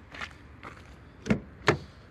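Car doors on a Skoda Rapid Spaceback being handled, with a few light steps or rustles and then two sharp clunks less than half a second apart, the first with a deep thud like a door shutting.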